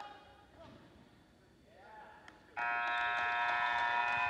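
Gym scoreboard buzzer sounding about two and a half seconds in, one loud, steady tone that holds on, marking the end of the wrestling bout. Before it, faint shouts from the crowd.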